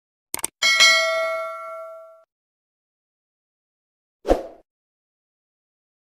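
Subscribe-animation sound effects: two quick mouse clicks, then a bright bell ding that rings on and fades over about a second and a half. A short dull thump comes about four seconds in.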